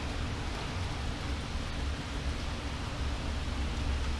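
Steady rain, heard as an even hiss with a low rumble beneath it.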